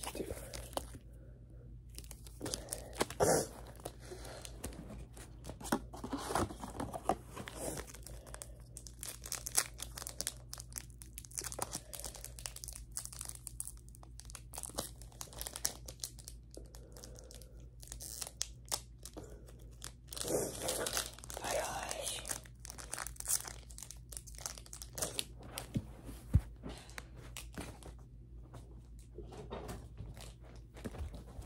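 Foil wrapper of a Pokémon card booster pack being torn open and crinkled by hand, then cards inside slid and flicked through. Irregular crackles and rips, with louder bursts a few seconds in and again about two-thirds of the way through.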